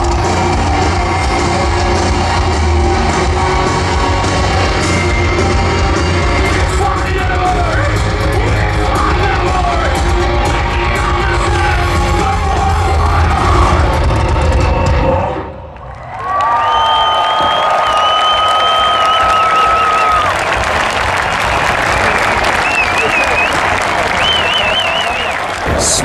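Metal band playing live through a large outdoor PA, loud with heavy bass and guitars. About fifteen seconds in it cuts off, and a crowd cheering follows, with several long shrill whistles.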